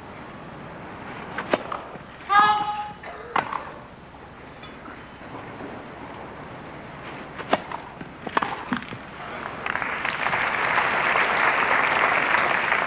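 Tennis ball struck by rackets on a grass court: a few sharp single pops, the clearest a pair about seven and a half and eight and a half seconds in, with a short voice call about two seconds in. From about ten seconds a crowd applauds the finished point, the applause swelling to the end.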